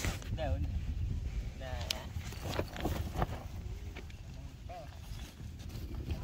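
A few short, high-pitched vocal sounds from a young child over a steady low rumble.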